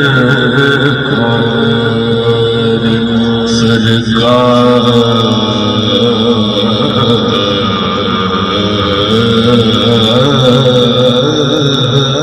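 A man singing a naat (Urdu devotional poem) unaccompanied into a microphone over a PA, in long held notes that waver and bend.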